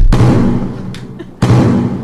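Two loud, heavy thuds about a second and a half apart, each with a low boom that rings on and fades over about a second.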